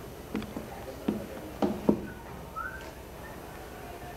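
Handling noise at a lectern: about five knocks and bumps in the first two seconds, then a brief rising squeak, over a steady room hum.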